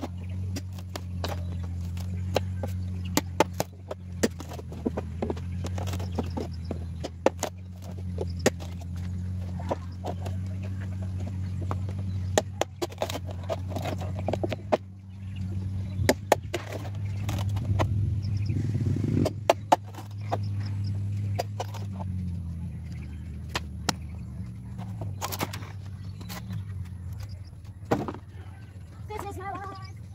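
A hatchet chopping into green bamboo poles: sharp, irregular knocks, often several in quick succession, over a steady low motor hum.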